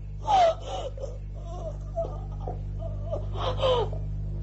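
A distressed person sobbing and gasping, with short falling wailing cries about a third of a second in and again near the end, over a steady low hum.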